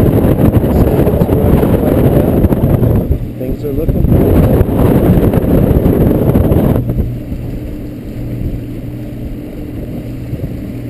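Evinrude E-Tec 135 H.O. two-stroke outboard running the boat at speed, half buried under heavy wind buffeting on the microphone and rushing water. About seven seconds in the wind noise drops away sharply, and the outboard's steady drone comes through clearly.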